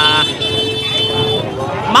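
Busy street noise of motorbikes riding past through a dense crowd, under a man's drawn-out hesitation sound 'à' at the start. A steady tone holds for about a second after it.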